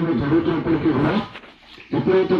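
A man speaking into a handheld microphone, pausing briefly about two-thirds of the way through.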